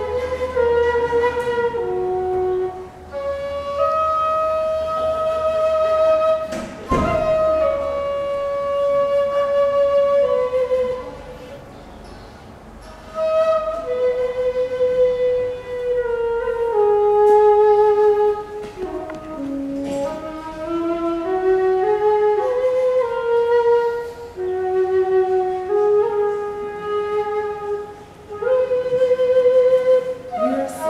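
A long Chinese bamboo flute played solo: a slow melody of held notes stepping up and down, some long notes with vibrato, and a short pause about halfway through.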